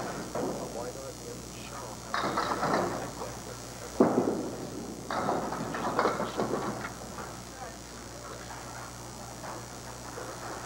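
A candlepin bowling ball hits the pins with a sharp crack about four seconds in, and the pins clatter down a second or two later, over the low murmur of a bowling alley crowd.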